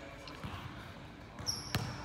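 A basketball bouncing on a gym floor, a few faint bounces and then one sharper bounce near the end, with a brief high squeak just before it.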